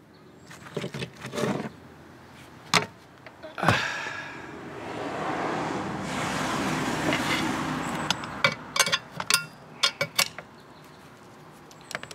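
A passing vehicle: a steady rush that swells and fades over about four seconds in the middle. Before and after it, small sharp metal clicks and taps of hand tools working on a small outboard motor's carburetor.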